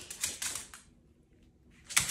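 A small dog's claws clicking quickly on a hard wood-look floor as it moves about, for under a second, then a louder sharp click near the end.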